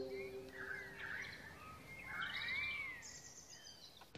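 Birds calling over a faint outdoor ambience: a few whistled calls that rise and fall, about a second in and again just past the two-second mark.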